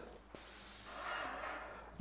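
Airless paint spray gun firing one short pass of thinned wall paint at about 1,700 psi. It is a sudden, steady hiss that starts about a third of a second in and holds for about a second, then fades out.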